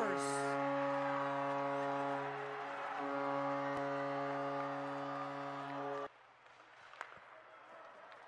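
Arena goal horn sounding one long, steady note for about six seconds, then cutting off suddenly, with the crowd cheering beneath it, signalling that a goal has been scored.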